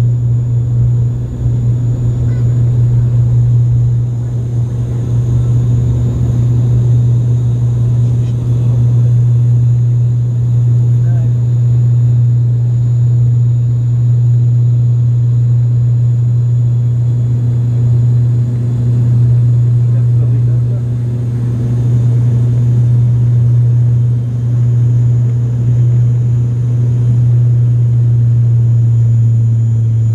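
Airliner engines at takeoff power heard from inside the passenger cabin during the takeoff and climb: a loud, steady low drone over a rumble.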